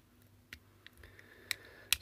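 A few small, faint clicks as a snap-fit plastic cover is prised off a small LED driver power supply with a metal spudger, the sharpest one near the end as the cover pops free.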